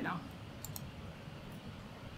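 Quiet room tone with two faint clicks about two-thirds of a second in, from slides being advanced on a computer.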